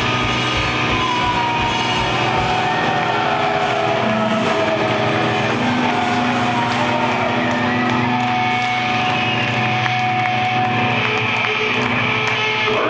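Amplified electric guitars and bass of a live death metal band, the drumming stopping about a second in while the guitars hold loud, droning sustained notes with slowly gliding pitches.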